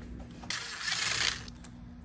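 A Ryobi cordless drill/driver briefly backing out a chainring spider bolt: a short burst of rattly, unpitched mechanical noise lasting under a second, starting about half a second in.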